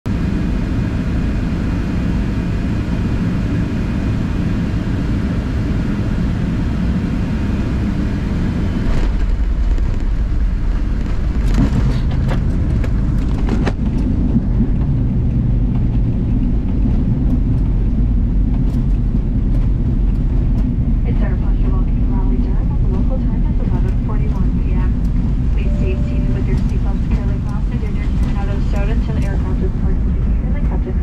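Cabin noise of a Boeing 757-232 with Pratt & Whitney PW2037 engines on landing, heard inside the cabin: a steady rush of airflow and engine noise, then touchdown with a sharp jolt about nine seconds in, after which the low rumble of the wheels rolling on the runway gets heavier. A few clunks follow over the next few seconds, and the high hiss fades as the aircraft slows.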